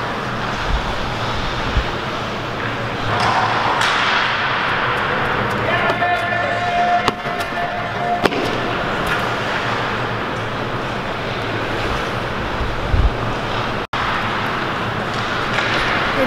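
Steady noise of a large indoor track hall, with faint indistinct voices. A steady tone holds for about two seconds near the middle.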